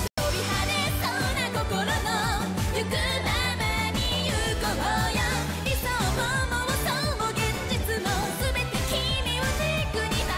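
Anime opening theme song: a J-pop track with a singer over a full band and a steady beat, broken by a split-second dropout right at the start.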